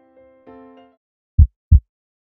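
Soft electric-piano-like music fades out in the first second. After a short gap comes a heartbeat sound: a pair of loud, low thumps in a lub-dub rhythm near the end.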